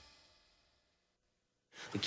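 Tail of a TV soap opera's opening theme music fading out over about half a second, then near silence. A voice starts abruptly just before the end.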